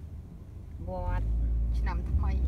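Low, steady rumble of a moving car heard inside its cabin, growing louder about halfway through, with two brief vocal sounds over it.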